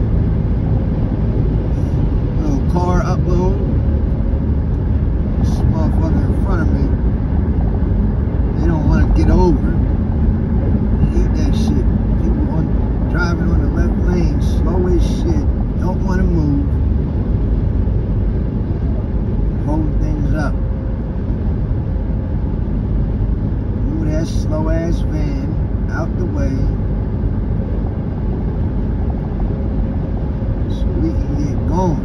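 Steady low road and engine noise inside a car cabin at highway speed, with an indistinct voice breaking in now and then.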